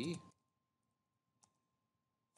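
Faint keystrokes on a computer keyboard: a few soft clicks, then one sharper click about one and a half seconds in.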